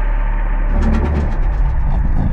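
Deep, steady rumbling drone of a cinematic trailer soundtrack, with faint rapid ticking starting under a second in.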